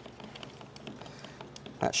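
A metal strip stirring primer surfacer and hardener in a plastic mixing cup, making faint light scrapes and ticks against the cup. A man's voice starts near the end.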